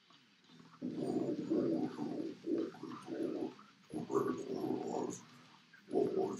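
Deep guttural death-metal growl vocals, sung in rough phrases that start about a second in, with a short break about four seconds in and another just after five seconds.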